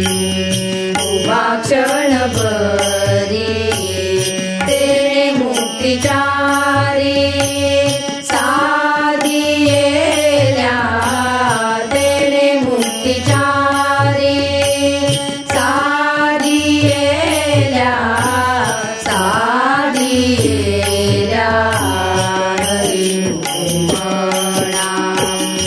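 Marathi devotional bhajan: a voice sings a gliding, ornamented melody over harmonium and tabla, with a steady run of percussion strikes throughout.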